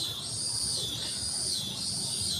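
Steady, high-pitched chirring of an outdoor insect chorus, over a faint low background rumble.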